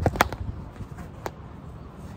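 Field hockey stick tapping the ball on artificial turf: a quick run of sharp taps at the start and another single tap just over a second in.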